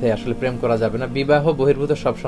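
A man speaking Bengali, talking steadily to the camera.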